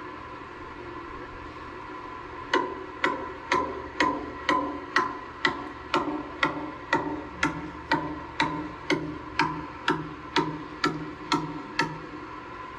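A mallet pounding a bamboo stick into soft sand: a steady run of hollow, ringing blows, about two a second, starting a couple of seconds in and going on to near the end.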